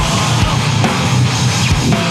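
Grindcore/powerviolence band playing: loud, dense distorted guitars over fast, busy drumming, with no let-up.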